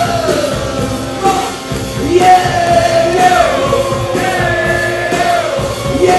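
Live rock music: a male singer holds long, wordless sung notes that glide from one pitch to the next, over the instrumental accompaniment.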